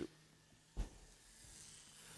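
Chalk on a blackboard: a single short knock about a second in, then faint chalk scratching that grows slightly toward the end.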